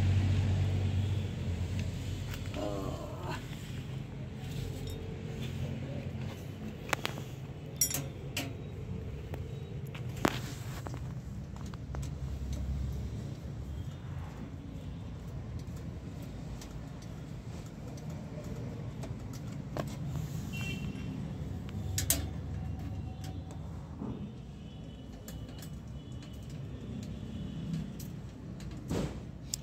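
Scattered metallic clicks and clinks from a screwdriver working on a steel wire basket being fitted to the front of an electric bicycle, over a steady low background hum.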